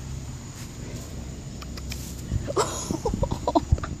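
A low steady rumble, then a woman laughing in quick short bursts over the last second and a half, with a few sharp thumps from the phone being handled.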